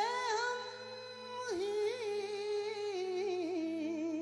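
A male voice sings a wordless, ornamented alap with sliding and wavering held notes, briefly dipping and gliding down about a second and a half in, over a steady low drone.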